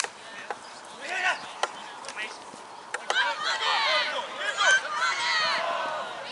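Several voices shouting at once from players and sideline spectators at a rugby league match, louder and denser over the second half as play moves on, with a few sharp clicks in the first half.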